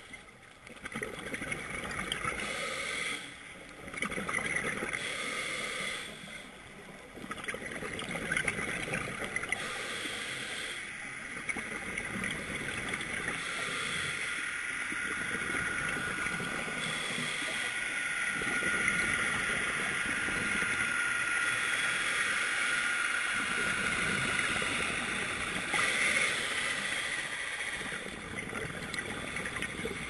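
Scuba divers' regulator breathing and exhaled bubbles heard underwater through a sealed camera housing: a steady muffled rushing and gurgling, with short lulls in the first few seconds.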